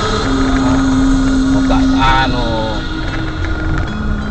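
Steady engine and road noise of a car driving slowly in traffic, heard from inside the cabin, with a brief voice about two seconds in.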